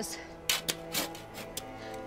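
A hand tool digging into soil: about four short, sharp strikes within two seconds, over steady background music.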